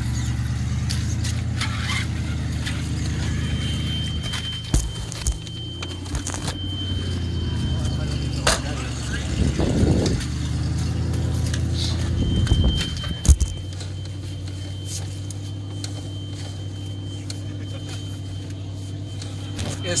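SUV engine idling steadily, with scattered knocks and clunks, the loudest about thirteen seconds in, after which the engine note drops slightly.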